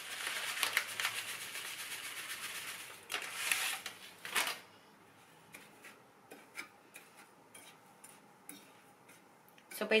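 Metal fork stirring and scraping a flour and panko breadcrumb mix in a ceramic bowl: rapid, steady scratching for the first four seconds or so, then much softer stirring with scattered light clicks.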